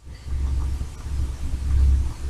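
A steady low rumble, strongest near the end: handling noise on the camera's microphone as the camera is moved.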